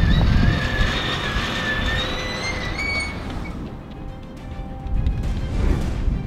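A winch whining as it pulls electrical cable through buried conduit, the whine rising slightly in pitch over about three seconds and then stopping, over a low rumble and background music.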